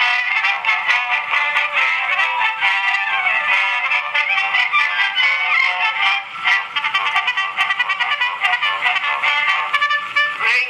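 An Edison two-minute wax cylinder playing through the small horn of a clockwork cylinder phonograph: a thin, tinny instrumental introduction with almost no bass, with light surface crackle throughout.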